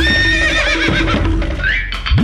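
A cartoon horse whinnies once, a wavering neigh in about the first second, over background music.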